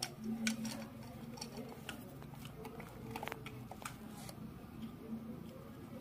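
Faint, scattered clicks and taps as a GoPro Hero 11 Black battery is handled and fitted into the camera's battery compartment, plastic against plastic, with a slightly sharper click near the start and another about three seconds in.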